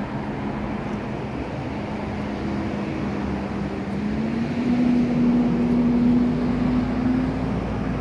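A steady low mechanical hum over outdoor background noise, rising a little in pitch and getting louder about four seconds in.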